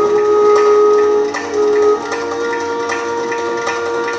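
Indian instrumental background music: a wind instrument holds long notes, stepping up to a higher one about halfway, over regular light drum strokes.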